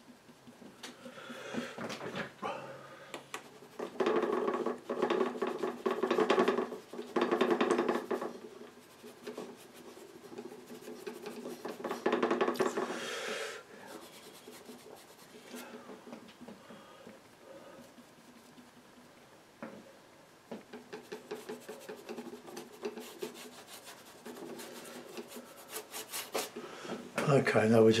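Bristle brush scrubbing and dabbing oil paint, rasping against the palette and painting surface in uneven bursts. The strokes are loudest in two spells, from about four to eight seconds in and around twelve to thirteen seconds, then go on lighter.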